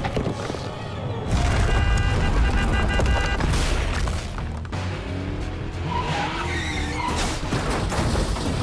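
Cartoon action soundtrack: a mine cart rumbling along rails under music. A heavy rumble comes in about a second in, and there are screeching, wavering tones later.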